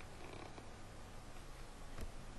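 Faint steady background noise: room tone with microphone hiss and a low hum, no distinct events.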